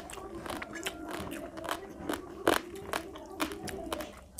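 Close-miked chewing of fish and rice, with many sharp wet mouth clicks and smacks, the loudest about two and a half seconds in. Fingers squish and gather rice on a paper plate.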